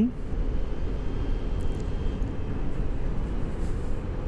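Vespa GTS 125 scooter riding at a steady speed: its single-cylinder four-stroke engine running under a steady rumble of wind and road noise on the microphone.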